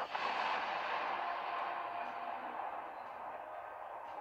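A soft, even hiss that slowly fades over the few seconds, with a faint steady tone under it.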